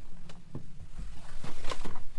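A few light knocks followed by a short rustle, about a second and a half in, as a person moves through a yacht's cabin doorway.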